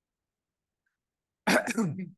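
Silence for about a second and a half, then a man clears his throat once, briefly and loudly.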